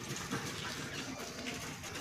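Birds calling over a steady outdoor background hum.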